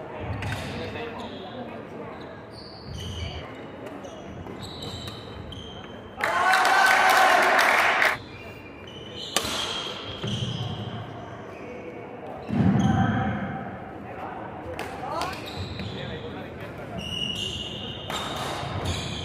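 Badminton singles rally on a wooden indoor court: shoe squeaks and footfalls, with sharp racket strikes on the shuttlecock, echoing in the hall. A loud voice lasts about two seconds, starting around six seconds in.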